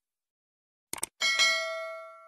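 Subscribe-button sound effects: two quick mouse clicks about a second in, then a bright notification-bell ding that rings and slowly fades.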